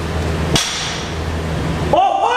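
A single sharp metallic clank about half a second in, weight plates on a loaded barbell knocking during a heavy deadlift, over a steady low hum.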